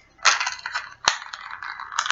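A small keychain package crinkling and crackling as it is squeezed and pried at by hand, stubborn to open, with a sharp click about a second in.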